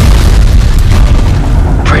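A loud explosion: a sharp blast followed by a heavy, low rumble that carries on, a battlefield sound effect in a film mix.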